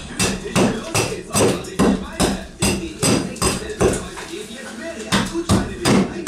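Rapid blows of a hand tool against a wooden floor beam, about two to three strikes a second with a brief pause past the middle, chipping away the beam's damaged outer wood.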